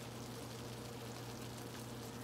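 Creamy tuna casserole sauce simmering in a skillet on an electric stove: a faint, steady bubbling over a low, steady hum.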